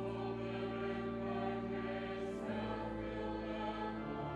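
Youth choir singing a slow, sustained passage of sacred music over steady held low notes. The harmony shifts about halfway through.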